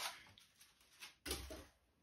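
Faint handling noises as a small metal lantern is taken out of its white cardboard box: a small click about a second in, then a short rustle with a soft knock.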